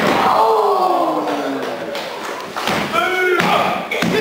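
A wrestler's body slammed onto the ring mat: one heavy thud right at the start. Spectators then shout and call out.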